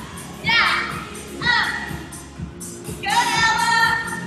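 Recorded song playing, a singer's voice in short phrases over a steady beat.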